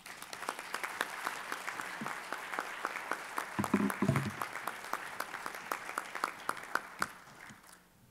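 Audience applause: many hands clapping, starting at once and thinning out near the end. A short voice is heard about halfway through.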